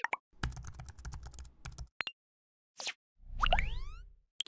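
Synthetic sound effects for an animated logo sting. A rapid run of keyboard-typing clicks is followed by a sharp click and a short whoosh. Near the end comes a louder rising, ringing chime with upward-gliding tones.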